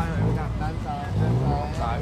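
Steady low rumble of busy street traffic, with voices talking over it.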